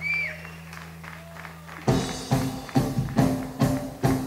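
Steady hum from stage amplifiers with a brief high-pitched glide. About two seconds in, a rock band kicks in loudly on a song, drums hitting a steady beat of two to three strikes a second under guitar and bass.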